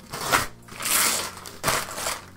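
Parcel wrapping rustling and crinkling as it is pulled off a box, in three bursts, the longest about a second in.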